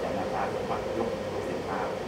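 A steady low room hum, with a few short, quiet bits of voice over it.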